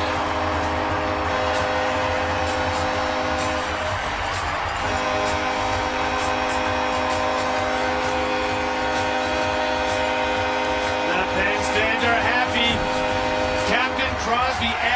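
Hockey arena goal horn sounding for a home-team goal: a long held blast, broken once about four seconds in and then sounded again.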